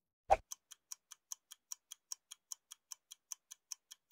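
Clock-like ticking sound effect: one louder click, then a fast, even run of light ticks, about five a second.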